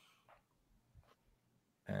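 Near silence with a few faint brief clicks; a man's voice starts with an "uh" near the end.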